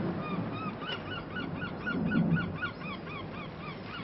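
A flock of birds calling, many short honking cries in quick succession, over the rush of breaking surf that swells about two seconds in.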